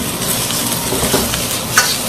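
Sliced onions and chilies sizzling in a hot wok over a gas flame, stirred with a metal wok ladle. There are a few sharp scrapes and clicks in the second half as the ladle works the vegetables and the wok is tossed.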